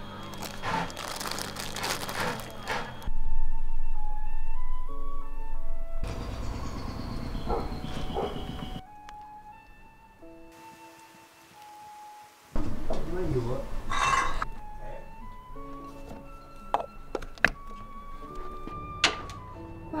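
Background music, a slow melody of held notes, with stretches of noisier sound between them and a few sharp clicks near the end.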